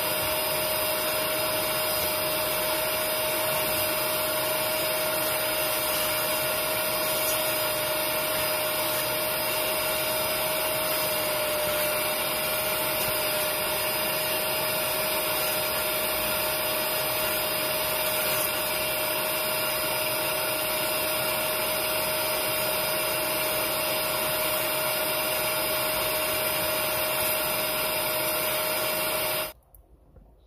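Portable upholstery extractor (spot cleaner) running steadily with a constant whine, its nozzle sucking dirty cleaning solution out of a cloth car seat. It cuts off suddenly near the end.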